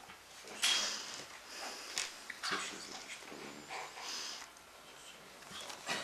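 Room noise of people at a meeting table: brief rustles and soft handling sounds, with low, indistinct voices murmuring in between.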